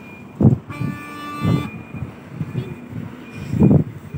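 A vehicle horn sounds once, held for about a second, among stranded traffic. A faint high beep comes and goes, and several low thumps break in, the loudest near the end.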